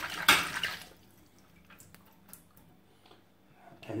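Water splashing and sloshing in a metal sink as a brass cartridge case is rinsed out, mostly in the first second; after that only a few faint light clicks.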